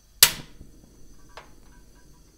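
A single sharp knock that dies away quickly, then a faint click about a second later.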